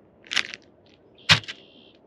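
Crinkly plastic lure bag being handled, giving two sharp crackles about a second apart, the second the louder.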